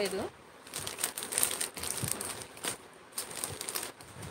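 Plastic jewellery pouches crinkling and rustling as they are handled, in short irregular crackles.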